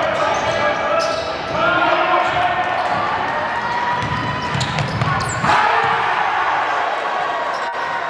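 Live gym sound at a basketball game: a basketball dribbled on the hardwood court among echoing spectators' voices and shouts.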